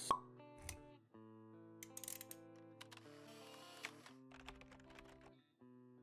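Quiet logo intro sting: a sharp pop at the start, then soft held synth notes with a few light clicks.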